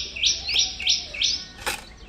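A bird calling in a quick run of short, high chirps, about three a second, each rising at its start, that stops about a second and a half in. A single sharp click follows shortly after.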